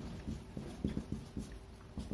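Marker pen writing on a board: a faint run of short, irregular taps and scrapes as the tip strokes out an expression.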